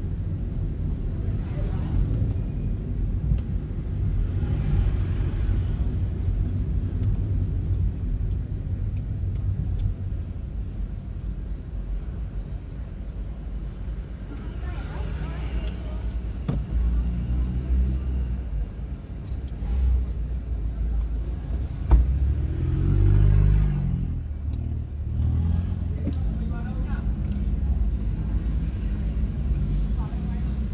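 Steady low rumble of a car's engine and road noise heard from inside the cabin as it creeps through slow city traffic, with a sharp click about two-thirds of the way through.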